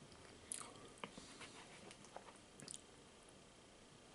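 A person chewing food, with a few small mouth clicks and a short sharp noise about half a second in.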